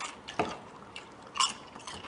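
Crisp homemade microwaved potato chips crackling as fingers press and break them in a plastic bowl: a few short, sharp crunches.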